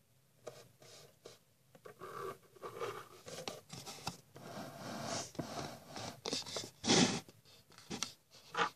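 Irregular scraping and rubbing of hands and fingers handling the phone close to its microphone as it is moved, with a louder scrape about seven seconds in.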